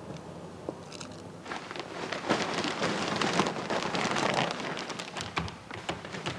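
Plastic bag rustling and crinkling as it is handled. It builds about a second and a half in, is densest in the middle and then eases off.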